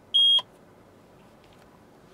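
A single short, high-pitched electronic beep from the Mercedes-Benz GLA200's dashboard electronics, heard as the reversing-camera view is on screen.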